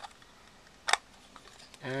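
A single sharp plastic click about a second in as a Canon pinch-type lens cap snaps into a ReadyCap holder, with a few faint handling ticks around it. A man's voice starts near the end.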